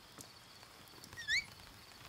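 Light rain pattering on a quiet garden with a faint, steady high insect trill, and one short rising chirp a little over a second in.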